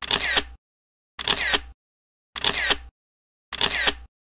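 Camera shutter sound effect, repeated four times about a second apart, each a half-second shutter click with dead silence between.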